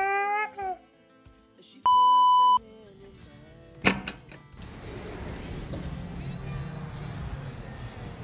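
A man's shout rising in pitch, cut off by a steady single-tone electronic beep of under a second. About four seconds in comes a sharp click as a sliding glass patio door is opened, followed by steady outdoor rushing noise.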